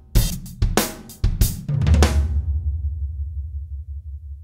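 Sampled acoustic drum kit played from a Korg Krome workstation's keys: a run of quick drum and cymbal hits, then a low floor tom struck about two seconds in and left to ring, fading slowly, showing off the full-length tom sample's 'proper ring'.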